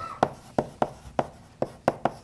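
Chalk writing on a blackboard: a quick run of sharp taps and short scrapes, about three or four a second, as letters are chalked.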